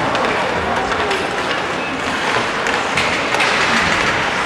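Ice hockey play on the rink: skates scraping the ice and sticks clacking on the ice and puck, with a few sharp clacks in the second half, and players' voices calling out.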